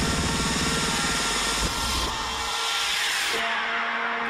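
Electronic dance music from a live trance set. The beat and bass drop out about halfway through, and a falling swoosh of noise sweeps down over the last second and a half, a transition in the mix.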